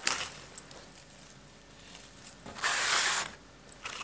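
A click at the start, then a short dry rustle of flower stems being handled, about two and a half seconds in and lasting under a second.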